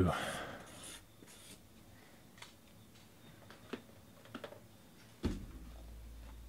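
Faint handling of a cardboard shipping case, with light scraping and a few small ticks as it is cut open, then a single sharper knock about five seconds in as the case is moved.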